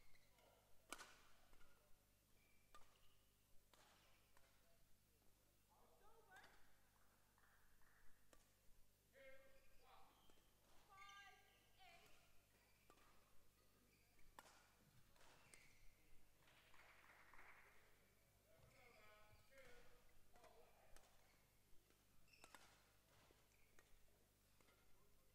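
Faint, sharp badminton racket hits on a shuttlecock every few seconds in a large hall, with a quick run of three hits around the middle. This is the warm-up hitting before a match starts. Faint voices come and go in the background.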